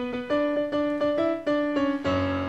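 Piano playing a melody of short struck notes, about four or five a second, in the middle range without bass.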